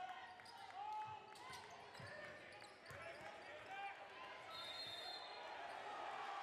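A basketball bounced on a hardwood gym floor, a few thuds about a second apart, under the voices and shouts of a crowd in the hall. A short, steady high-pitched tone sounds about halfway through.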